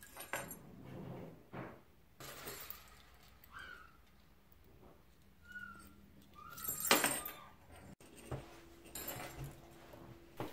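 Small metal jingle bells clinking and jingling faintly as they are handled and threaded onto jute twine, in a few short scattered bursts, the loudest about seven seconds in.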